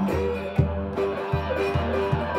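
Instrumental blues boogie on resonator guitar and lap steel guitar, sustained slide notes over a beat of low thumps.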